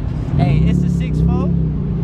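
A car engine running close by, rising and falling in pitch, over a constant low rumble of wind on the microphone, with a man's voice over it.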